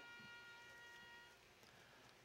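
Near silence. A click as the audio feed opens, then faint hiss with a few faint, high, steady tones that fade out after about a second and a half.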